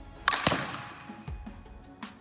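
Background music with a steady beat, over which two sharp cracks come close together about a quarter and half a second in, from a softball struck during batting practice.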